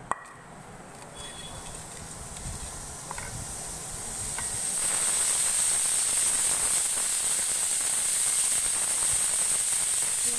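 A steady hiss that grows louder over the first five seconds and then holds, with a short clink just at the start.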